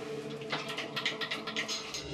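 Operating-room room sound: a faint steady hum of equipment, with a run of light clicks and rattles starting about half a second in as staff handle the patient and gear.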